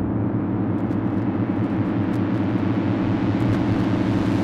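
A loud, steady low rumbling drone with a fine rapid pulse. Its higher range slowly fills in as it goes.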